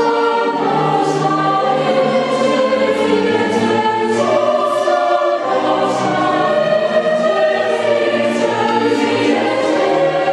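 Mixed choir of men and women singing in held chords, accompanied by a string orchestra with violins, with crisp 's' sounds from the sung words cutting through now and then.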